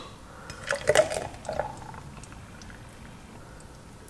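Thick blended fruit smoothie poured from a blender jug into a glass jar. A few short glugs and splashes come in the first second and a half, then only a faint pour.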